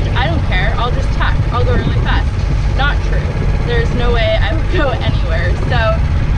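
A woman talking over a steady low rumble.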